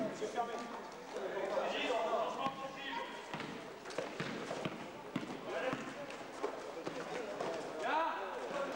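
A basketball being dribbled on a hard gym floor, a quick run of bounces in the middle stretch, among players' shouts and calls.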